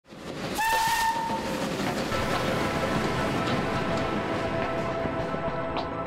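Steam locomotive whistle giving one short blast just after the start, lasting under a second, within a loud rushing noise of steam and train that carries on after the whistle stops.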